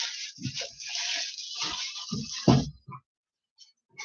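Plastic wrapping and cardboard packaging rustling as a foam RC plane wing is worked out of its kit box, with a few dull knocks of the foam part against the box.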